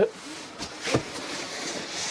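A padded fabric tripod carry bag being pulled up out of a cardboard shipping box, its fabric scraping and rustling against the cardboard. There are a couple of light knocks about halfway through.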